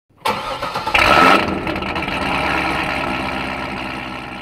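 A car engine starting up, with a louder burst about a second in, then idling steadily and beginning to fade near the end.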